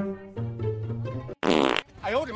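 A low, buzzy sound held at a steady pitch that changes note about a third of a second in and stops suddenly about 1.4 s in, followed by a short, loud, wavering tone just before the end.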